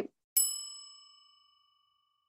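A single bell-like ding: one sharp strike with several clear tones at once, ringing out and fading over about a second.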